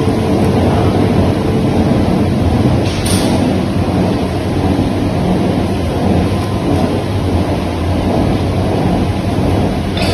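Steady low rumbling noise of running machinery, with one brief click about three seconds in.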